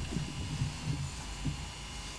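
Low steady hum of a courtroom microphone feed, with faint low rumbles and no clear event.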